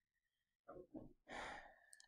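Near silence with a faint breath, a soft sigh-like exhale, a little past the middle.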